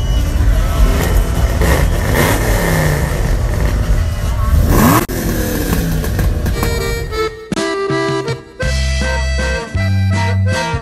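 Loud car-meet noise of vehicle engines running, with a rev rising in pitch about five seconds in. It then gives way to music, which plays on its own for the last few seconds.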